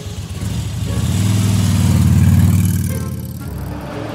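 Motor scooter engine pulling away, growing louder for about two seconds and then fading out.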